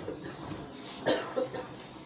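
A man's brief cough about a second into a pause in his speech, with a smaller throat sound just after.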